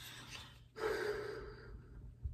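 A person breathing out hard through the mouth: one breathy exhale, like a sigh or gasp, about a second long, starting just before the middle.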